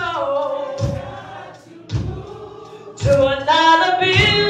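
A woman singing a gospel song, with other voices joining in like a choir. A low thump sounds about once a second under the singing.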